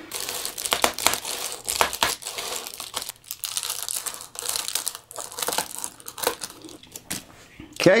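Scissors cutting through a sheet of Reflectix, the foil-faced bubble-wrap insulation crackling and crinkling as it is cut and handled, in irregular runs with short pauses.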